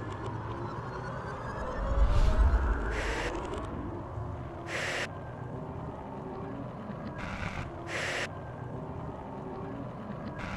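Electronic intro music: held synth notes with gliding tones, a deep low hit about two seconds in that is the loudest moment, and several short bursts of hissing noise.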